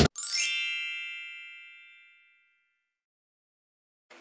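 A single bright, bell-like chime sound effect rings once and fades away over about two seconds.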